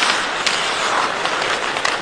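Steady arena crowd noise at a hockey game, with a couple of faint sharp clicks.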